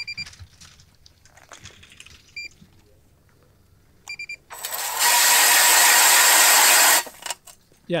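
Battery-powered electric ice auger spinning up and drilling into lake ice: a loud, steady whirring grind starts about four and a half seconds in and cuts off abruptly after about two and a half seconds. The auger is released before it has bored through to the water.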